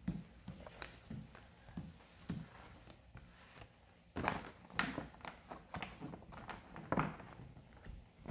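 Tarot cards being gathered up off a wooden table and handled, with scattered soft knocks and rustles. The loudest knocks come a little after four seconds and again near seven seconds.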